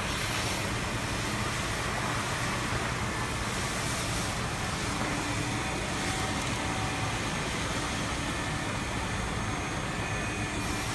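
Ruwac Range Vac 220 portable industrial vacuum running steadily, its floor tool drawing lead dust off a concrete floor: a constant rush of air and motor noise with a faint steady whine.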